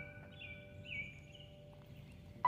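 Faint bird chirps, three or four short calls each dipping in pitch, in a quiet outdoor lull while steady music tones fade out.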